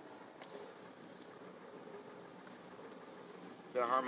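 Faint, steady background noise with no distinct event; a man's voice starts near the end.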